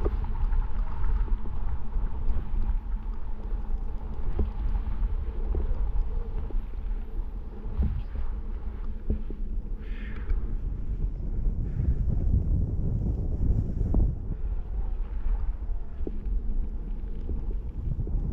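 Wind buffeting a helmet-mounted camera microphone as a snowboarder rides downhill, a steady low rumble rising and falling, with the board hissing over the snow and a few short knocks.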